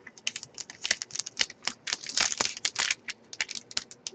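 Hockey card pack being handled by hand: the wrapper crinkling and the cards being shuffled, in a dense run of quick, irregular crackles and clicks.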